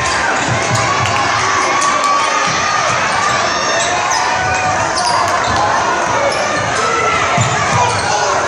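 Crowd noise and shouting in a gymnasium during a basketball game, with a basketball bouncing on the hardwood court.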